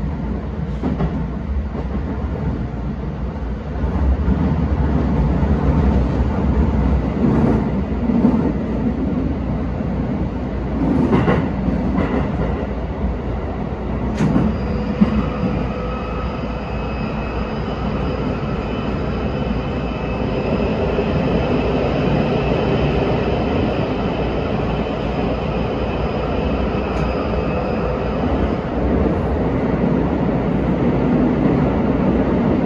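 Keisei 3100-series electric train running, heard from the front cab: a steady rumble of wheels on rails that gets louder about four seconds in as the train runs into a tunnel. From about halfway, steady high-pitched whining tones ride over the rumble while it runs through the tunnel up to an underground station.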